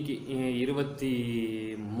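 A man talking, drawing out one syllable in a held, even tone for most of a second near the middle.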